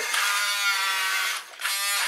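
WPL B-1 1:16 RC military truck's brushed electric motor and gear drive whining as the truck drives along the bench. The whine cuts out briefly about one and a half seconds in, then starts again as the truck drives back the other way.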